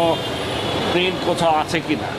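A man speaking in short phrases, with a pause in the middle, over a steady background hum and noise.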